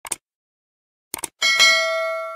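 Subscribe-button sound effect: two quick mouse clicks, two more about a second later, then a bright notification-bell ding that rings on and fades slowly.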